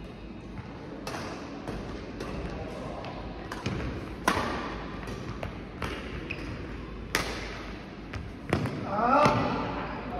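Badminton rackets striking a shuttlecock in a large sports hall during a rally, a series of sharp cracks one to three times a second, with players' footfalls. A voice calls out briefly near the end.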